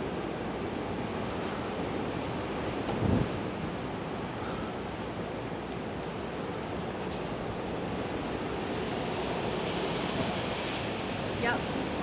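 Steady storm noise of wind and rain, with one short, louder burst about three seconds in.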